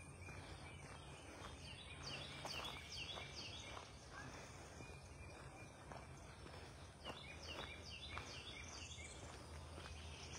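Faint birdsong: a bird repeating a run of quick down-slurred high notes, twice, with soft footsteps underneath.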